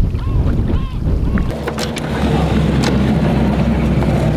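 Rumbling water and wind noise, then from about one and a half seconds in a steady low drone like a motor running, with a few sharp clicks over it.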